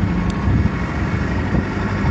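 Steady low rumble of street traffic, with wind on the microphone.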